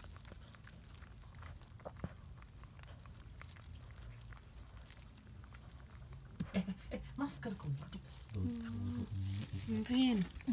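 Faint wet clicking of a mother toy poodle licking her newborn puppy clean. From about six and a half seconds in, a low voice or whimper begins.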